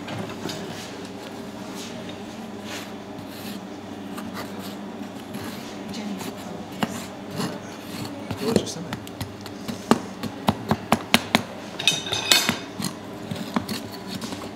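A steel bar scraping and knocking packed foundry sand off freshly cast aluminium bars in a wooden moulding flask. It is fairly quiet at first, then sharp knocks and scrapes come thick and fast from about halfway in, with a harsh scrape near the end.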